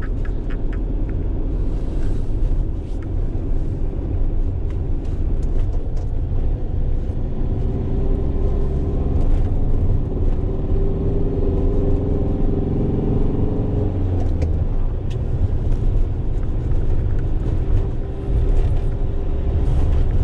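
Engine and road noise inside the cab of a moving Fiat Ducato van, heard as a steady rumble. In the middle the engine note climbs for several seconds as it pulls, then drops off suddenly.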